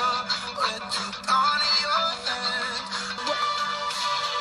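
A pop song playing: a singing voice over sustained chords, with a held low note that drops out about three seconds in.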